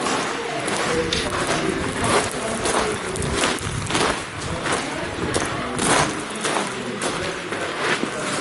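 Footsteps crunching on a loose gravel canyon floor at a walking pace, about two to three crunches a second.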